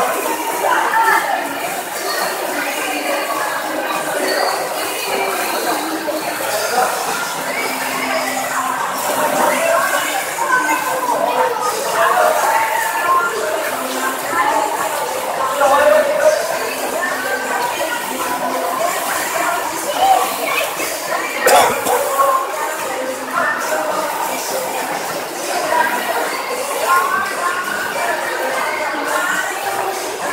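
Indoor swimming pool hall ambience: many indistinct, echoing voices of children and instructors, mixed with splashing water from swimmers.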